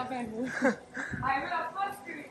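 Speech only: people talking quietly, with a woman's voice among them.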